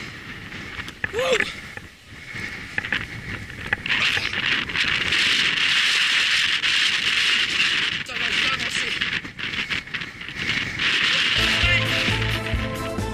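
Bicycle rolling over a wooden plank boardwalk, the boards and bike rattling loudly from about four seconds in until near the end, called an extreme noise. Music starts just before the end.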